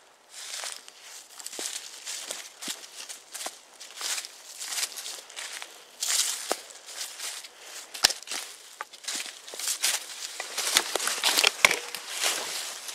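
Footsteps crunching through dry fallen leaves on a forest floor, in an uneven walking rhythm, with a few sharper snaps near the end.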